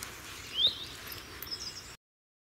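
Quiet outdoor ambience with a steady faint hiss and one short bird chirp rising in pitch a little over half a second in.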